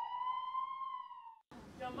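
Emergency vehicle siren wailing: one slow upward glide in pitch that levels off and dips slightly, then cuts off abruptly about one and a half seconds in. Speech follows at the cut.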